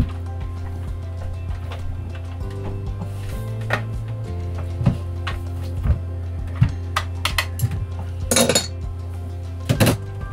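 Kitchen utensils knocking and clinking against a mixing bowl of cake batter: a scatter of sharp knocks, then two short rattling scrapes near the end, over steady background music.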